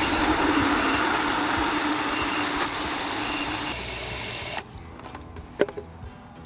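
Water jetting from an Ortho Dial N Spray hose-end sprayer into a plastic bucket, a steady rushing splash, during a timed flow-rate test at about two gallons a minute. It cuts off abruptly a little over four seconds in, followed by a single faint click.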